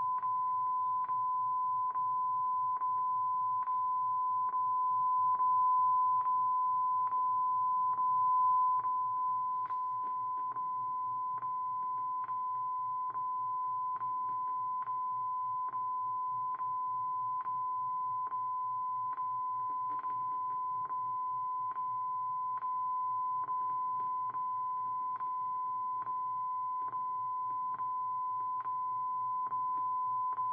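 A steady 1 kHz test tone with a click about once a second, played from the VHS tape through a CRT television's speaker. This is the 'white screen of death' (WSOD) clicking tone recorded on the tape after the programme ends.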